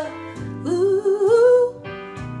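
A woman singing a slow, wavering phrase with no clear words over acoustic guitar accompaniment, the guitar chord ringing on by itself near the end.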